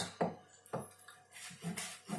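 Chef's knife cutting through a leek onto a plastic cutting board: a few separate crisp cuts.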